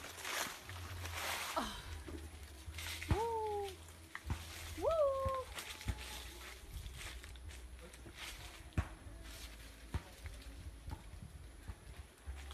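Rustling for a couple of seconds, then a voice calling out twice, about two seconds apart, each call jumping up in pitch and sliding down. A few sharp snaps follow later.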